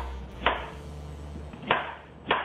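A knife cutting through a radish onto a cutting board, two crisp cuts about a second apart.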